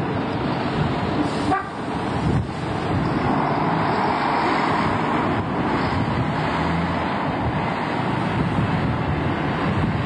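Double-decker bus diesel engine running as the bus drives off, with traffic noise and wind on the microphone.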